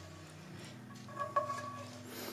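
Quiet, faint sounds of a plastic slotted spatula moving food around in a frying pan of sauce, with a light knock against the pan about halfway through.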